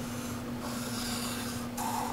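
Marker pen drawn across paper in long strokes, a soft scratchy rub lasting about a second, over a faint steady hum.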